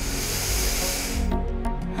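A deep in-breath filling the chest, heard as a hiss lasting about a second, over soft background music.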